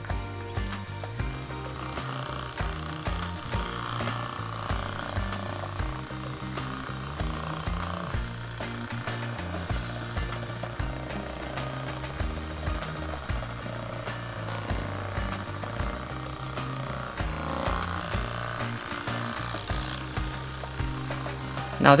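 Background music over a Hyperice Hypervolt massage gun running on its slow setting, its head working against the muscles of the neck and shoulder.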